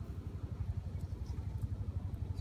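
An engine idling: a low, steady rumble with rapid, even pulses.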